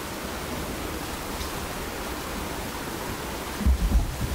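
Steady, even background hiss with no distinct events, then a few loud low bumps and rumbles near the end as the camera is handled and moved.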